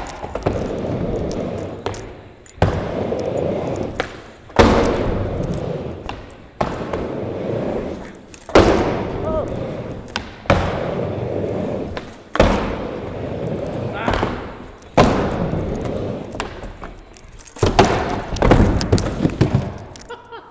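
Skateboard riding back and forth on a mini ramp: wheels rolling, with a knock of trucks or tail on the coping at each wall about every two seconds. Near the end comes a quick cluster of clattering impacts as the skater falls and the board clatters away.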